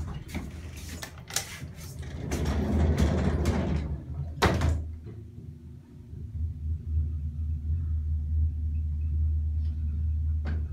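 Elevator doors closing on a 1930s Staley single-speed traction elevator: clatter and clicks that end in a loud bang about four and a half seconds in. A steady low hum follows as the elevator runs.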